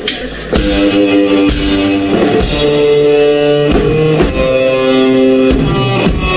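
Live rock band kicking in about half a second in: electric guitar and bass guitar playing loud held chords that change every second or so, over a drum kit.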